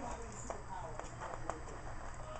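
A few light clicks and taps as a pack of scrapbook stickers is handled and looked over.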